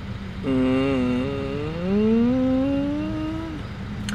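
A woman's voice holding one long wordless note, wavering at first and then sliding upward, from about half a second in to near the end. Beneath it runs the steady low hum of a car's interior.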